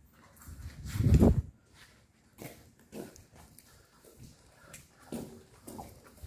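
A single loud, low-pitched growl about a second in, followed by a few fainter short grunts and breaths.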